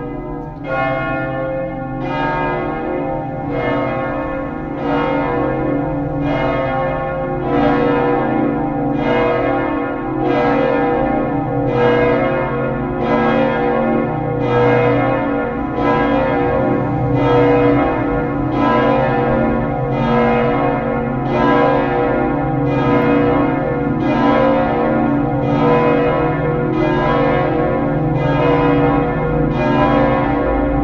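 The three swinging bronze church bells of Tolmezzo's Duomo di San Martino, tuned slightly flat B, C sharp and D sharp, pealing together in the falling-clapper style (battaglio cadente). Strokes come in a steady rhythm, about one every three quarters of a second, and the ringing overlaps. The peal grows louder over the first several seconds, then holds.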